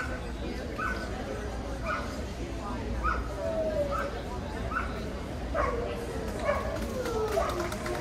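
A dog barking in short, high yips, about one a second, over the chatter of a crowd in a large hall.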